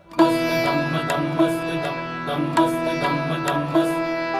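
Instrumental music starting up suddenly after a brief silence: plucked strings ring over a steady drone, with regular hand-drum strokes.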